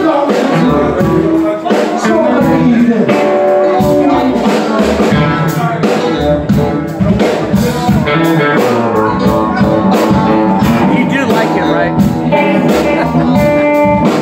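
Live blues band playing: amplified blues harmonica blown into a hand-cupped microphone over electric guitar, upright bass, keyboard and drums, with a steady beat.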